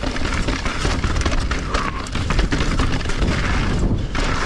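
Mountain bike descending a rocky, stone-pitched trail: tyres rumbling and the bike rattling and knocking over the stones, with wind buffeting the microphone.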